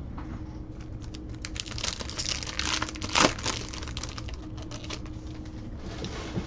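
Clear plastic wrapping on a pack of trading cards crinkling as it is handled, a dense run of quick crackles about two seconds in that thins out toward the end.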